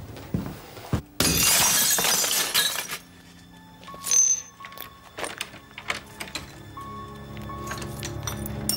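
A glass door pane smashed: one loud crash about a second in, lasting under two seconds. Then low, tense music with scattered small clicks and knocks.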